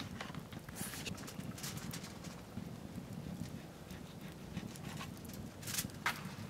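Light knocks and clicks of food being handled at a wooden table over a steady low background rumble, with a short burst of paper rustling near the end.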